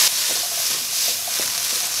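Chickpeas sizzling in hot oil and spices in a nonstick pan, stirred with a wooden spatula that gives a few soft knocks and scrapes against the pan over a steady hiss.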